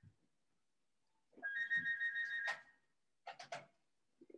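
After about a second of dead silence, a high, steady electronic ringing tone with a fast flutter sounds for just over a second, then a few quick clicks.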